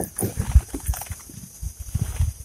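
Handling noise on a plastic kayak: a few soft, irregular knocks and rustles as gear is shifted, the loudest knock about half a second in.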